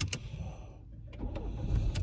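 Low rumble inside a parked car, growing louder about halfway through, with a few faint clicks.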